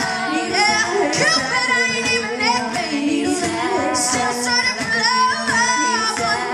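Female vocal trio singing live in harmony, with hand claps cutting through now and then and little instrument playing.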